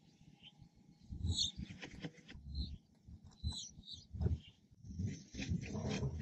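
Faint outdoor ambience with a few short, high bird chirps, and scattered low bumps and rustles.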